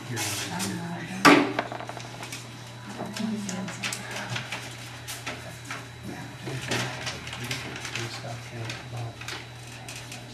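Meeting-room room tone: a steady low hum with scattered small clicks and rustles of papers and objects being handled at a table, and one sharp knock about a second in.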